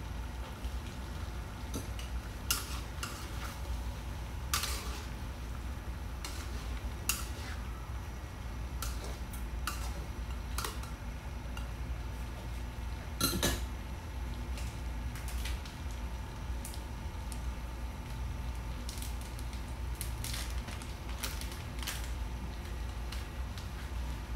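A metal spatula scraping and clinking against a wok while stirring chunks of stingray, in irregular strokes, the loudest about 13 seconds in, over a steady low hum.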